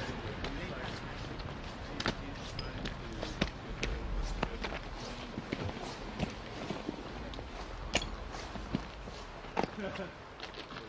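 Faint background voices over a steady outdoor hiss, with scattered sharp clicks and knocks of footsteps on loose rock, and a brief low wind rumble on the microphone about four seconds in.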